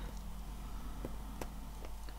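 Quiet, steady low hum with a few faint, soft clicks as a plastic circle-maker is nudged into line on a paper page.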